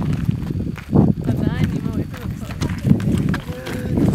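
Wind rumbling and buffeting on the camera microphone, with people's voices mixed in and a short wavering voice-like call about a second and a half in.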